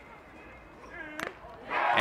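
A baseball popping sharply into the catcher's mitt a little over a second in, on a swinging third strike. Voices and crowd shouts rise near the end.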